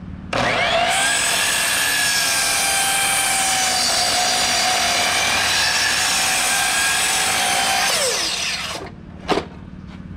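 Skilsaw 12-inch sliding miter saw starting up with a rising whine, then cutting through a 4x8 wood block for several seconds before the motor winds down. A single sharp knock follows near the end.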